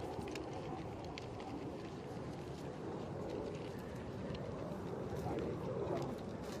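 Footsteps on dry grass with faint, irregular clicks and rattles of a walking Marine's gear, over a steady outdoor rumble.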